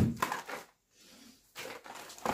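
Light rustling and a few soft knocks as grocery packages are handled and set down, with a near-silent pause in the middle.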